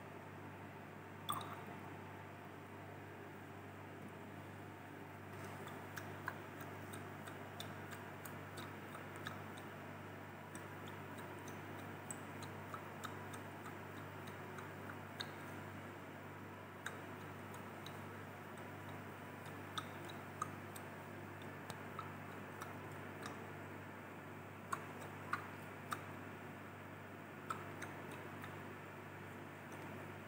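Quiet steady low room hum with faint, irregular small clicks as a glass test tube of succinic acid and water is shaken by hand to dissolve the solid. A few clicks near the end are a little sharper.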